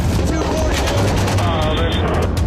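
Rapid, irregular bursts of automatic gunfire over a heavy low rumble, with a man's shouting voice about a second in.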